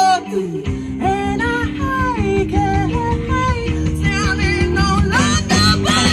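Live rock band playing electric guitars, bass and drums, with held and sliding guitar notes. The bass and drums come in just under a second in.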